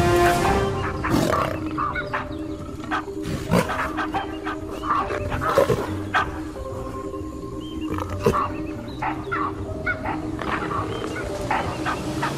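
Wild animal calls in short, scattered bursts over background music with long held notes.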